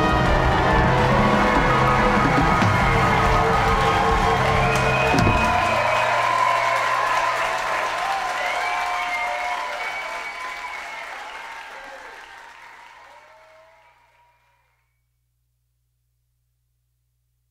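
A live hot-jazz band holds its final chord over drums, which cut off about five seconds in. Audience applause and cheering follow and fade out to silence near the end.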